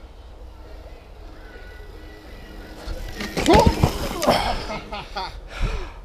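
A mountain biker crashing: from about three seconds in, a loud yell falling in pitch with clattering knocks as rider and bike hit the ground, then short cries. Before that, a steady low rumble.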